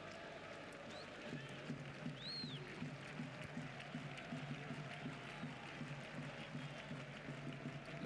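Football stadium crowd noise: a steady hum from the stands, with a rhythmic low pulse setting in about a second in. A short high whistle rises and falls near the third second.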